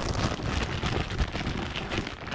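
Clear plastic bag crinkling as it is handled close to the microphone: a dense, irregular crackle.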